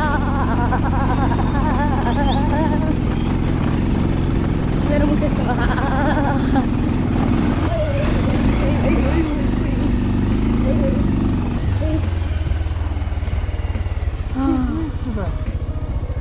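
Motorcycle engine running at low speed over a rough stone track, a steady low drone. Muffled talking rides over it in the first few seconds and again around six seconds in.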